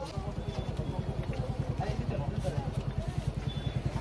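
A motorcycle engine idling close by, a steady fast low putter, with market chatter faint behind it.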